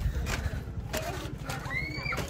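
Footsteps knocking on the bamboo and wooden floor of a treehouse lookout, a few separate knocks over a low rumble. Near the end comes a short high call that rises and then holds.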